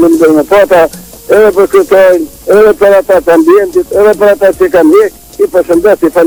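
A high-pitched person's voice in quick, short phrases with a lot of rise and fall in pitch, broken by brief pauses.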